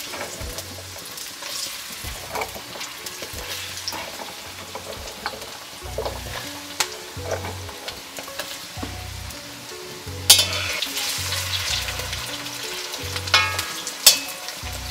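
Diced raw potatoes frying in hot vegetable oil in a kadai, sizzling and spattering with many sharp pops. The sizzle gets louder about ten seconds in, and near the end the pieces are turned with a metal slotted spatula.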